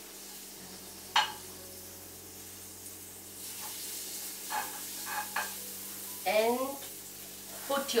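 Butter sizzling on a hot flat griddle (tawa) as a spoon spreads it, a steady low sizzle. A spoon clinks sharply on the pan about a second in, with a few lighter scrapes and taps later.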